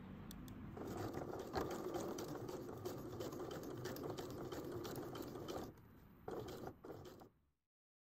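Sewing machine stitching a seam across two pinned cotton bias strips, running steadily with a fast even clatter of stitches. It stops about six seconds in, runs again briefly, then the sound cuts off suddenly.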